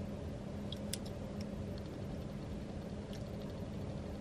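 Steady low hum inside a car, with a few faint ticks.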